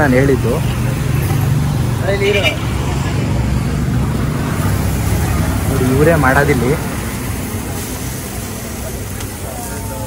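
Steady low rumble of road traffic, easing off about seven seconds in.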